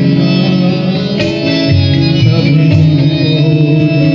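Live Indian instrumental music: a plucked, twangy Indian banjo (bulbul tarang) plays the melody over hand-drum and keyboard accompaniment, with no singing.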